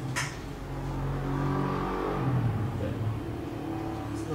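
A low engine hum that swells and then eases, with a short hiss just after the start.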